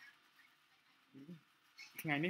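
Near silence, room tone, with one brief, quiet voiced sound from a person about a second in.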